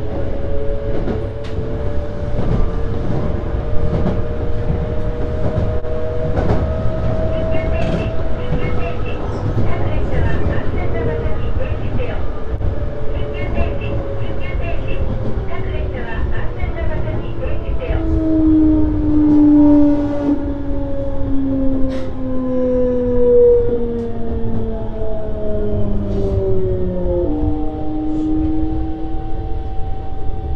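Electric train heard from the driver's cab, its traction motor and inverter whine over a steady running rumble with rail-joint clicks. In the second half the whine falls steadily in pitch as the train brakes, and the tones jump to new pitches near the end.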